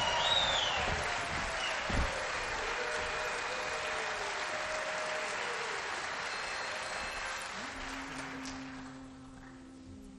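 Audience applauding as a barbershop quartet walks on stage, with a short whistle at the start and a thump about two seconds in. The applause fades away over the last couple of seconds. Near the end, soft held notes come in one after another as the quartet hums its opening pitch.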